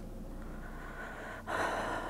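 A woman drawing a sharp, audible breath in through her mouth about one and a half seconds in. It follows a fainter breath in a halting pause between words.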